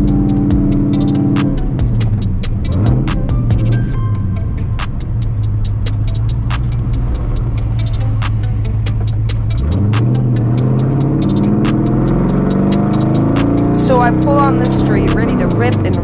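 A carbureted El Camino engine running while driving, rising in pitch about ten seconds in as it accelerates. Background music with vocals and a steady beat plays over it.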